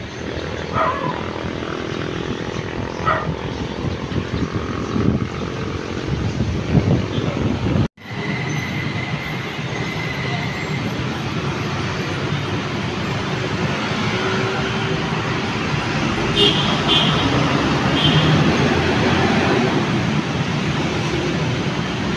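Steady traffic noise from a busy city road, starting after a brief cut about eight seconds in. Before it, general outdoor background noise with a few faint knocks.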